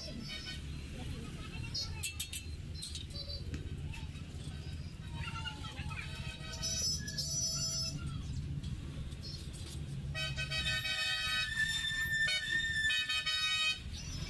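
Steady rumble of street traffic with vehicle horns honking: a short honk about halfway through and a longer, held honk near the end.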